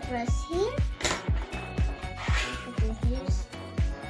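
Background music with a steady drum beat, with a voice over it.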